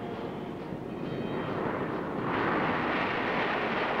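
Engine noise of a small military training aircraft on its take-off run, a steady rushing that grows louder and brighter from about halfway through as the aircraft lifts off.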